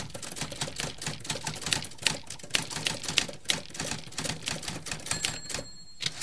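Typewriter keys clacking in quick, irregular strikes, several a second, with a thin high ringing tone near the end.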